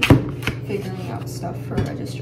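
Kitchen knife chopping food: a few sharp knocks, the loudest right at the start, another about half a second in and one near the end.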